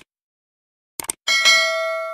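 Two quick clicks about a second in, then a single bell ding that rings on and slowly fades: the click-and-bell sound effect of a YouTube subscribe-button animation.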